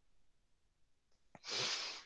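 Near silence, then, about a second and a half in, a man's short breath drawn in before he speaks again.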